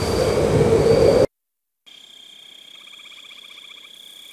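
A loud rushing noise with a low hum cuts off abruptly about a second in. After a brief silence comes quiet night ambience of crickets chirping, a steady high trill with fast pulsing.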